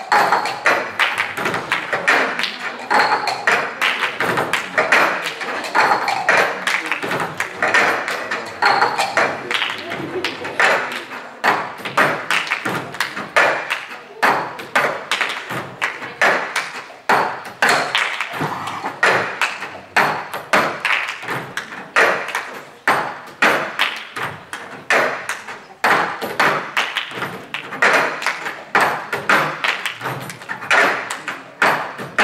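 Cup percussion: several players knocking, tapping and slamming cups on tabletops together in a fast, repeating rhythm of sharp knocks, several a second.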